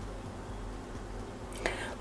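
Quiet room tone with a steady low hum. Near the end, a short breathy sound, an intake of breath just before speech.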